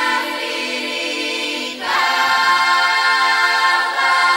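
Bulgarian women's folk choir singing a cappella in dense, held close-harmony chords over a low sustained note. About two seconds in the voices shift to a new, louder chord.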